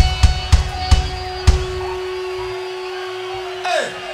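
Live punk-rock band in a break: the drums play a few last hits, then a single held guitar note rings on its own. Near the end a note swoops downward in pitch before the band comes back in.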